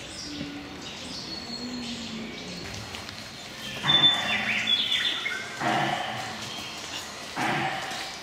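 Animatronic sauropod dinosaur's speaker sounding three loud, rough animal calls, the first the loudest and longest. Birds chirp faintly in the woods around it.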